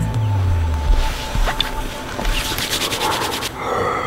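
Fabric of a jacket rustling close to the microphone as a person settles into a plastic chair, with a run of quick scuffs in the second half. The last notes of a music track die away about a second in.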